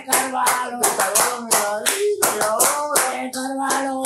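Hand clapping in a steady rhythm, about three claps a second, under voices singing a drawn-out football chant.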